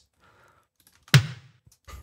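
A snare drum hit from the remix's snare track, played back through a reverb plugin, sounds about a second in with a short decaying tail. A fainter hit follows near the end.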